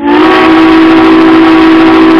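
Steam locomotive whistle blowing a long, loud blast of several tones sounding together, with a hiss behind it. It starts abruptly.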